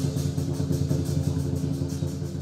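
Lion dance percussion playing a fast, steady roll: a dense, rumbling drumming that holds unbroken throughout.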